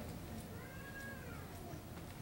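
A faint single meow-like call that rises and then falls over about a second.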